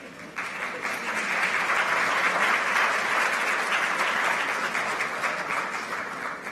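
Audience applauding: the clapping starts about half a second in, builds, then thins out near the end.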